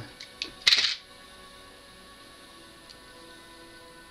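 A few faint clicks, then one short, sharp scrape about a second in from hands handling and cutting a short piece of hookup wire. After that only a faint steady hum remains.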